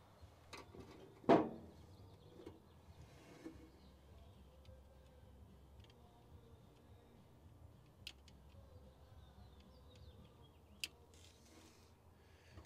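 Small handling noises at an old engine's open distributor: one sharp clack about a second in, then a few faint ticks later, over a quiet, steady background.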